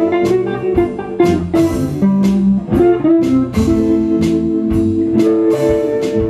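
Live instrumental band music led by a guitar in a bluesy style: quick plucked notes, with a few longer held notes past the middle.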